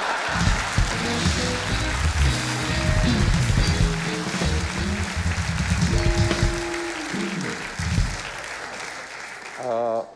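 A studio audience applauds while a live house band plays a short instrumental interlude with bass and drums. The music stops about eight seconds in and the applause dies down after it.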